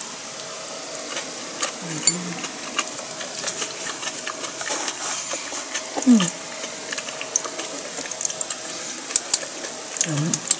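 A person chewing a mouthful of food, with many small wet mouth clicks and smacks throughout and brief closed-mouth murmurs about two and six seconds in.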